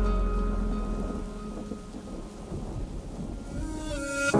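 Low rolling thunder with rain, fading as it goes, under the faint tail of soft music.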